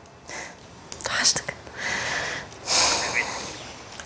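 Whispered speech: a voice whispering the name Rania in several short breathy bursts.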